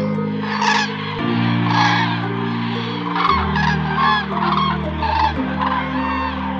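A flock of common cranes calling, many short calls overlapping in a steady run of about two a second, over background music of slow sustained low chords.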